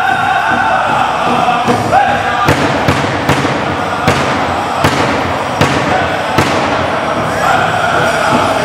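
Pow wow drum group singing an Anishinaabe honor song around a big drum. About two and a half seconds in, the voices give way to a run of hard, accented drum strikes roughly every half second, the honor beats, and the singing comes back near the end.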